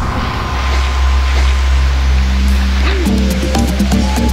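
Background music: a deep bass note held under the opening, then a stepping melody and a quick, even ticking beat come in about three seconds in.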